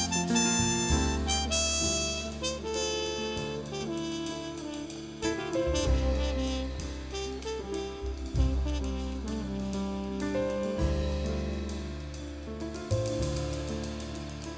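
Jazz quartet playing: a trumpet carries the melody over piano chords, a walking double bass and drums with cymbals.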